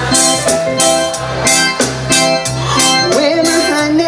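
Live reggae band playing loudly through a large outdoor PA: a bass line and drum kit keep a steady beat under guitar and keys. A voice comes in over the band near the end.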